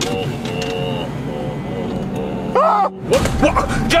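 Background music with a held melody, then, about two and a half seconds in, a short rising-and-falling cry. Half a second later comes a sudden loud rush of noise with shouting, as a moving car's door is flung open.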